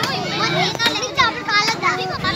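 Several children's voices shouting and squealing over one another while they play, with a few high squeals near the end.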